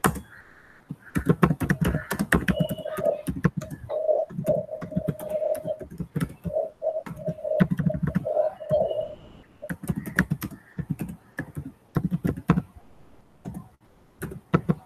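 Typing on a computer keyboard: an irregular run of key clicks with brief pauses now and then.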